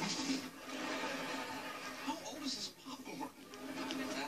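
Indistinct voices, not clear enough to make out words, over a steady low hum.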